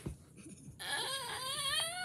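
A soft thump, then from about a second in a high, wavering whimper: a child's mock crying.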